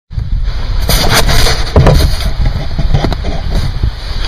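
Wind buffeting the microphone, a loud low rumble, with a few knocks of the camera being handled.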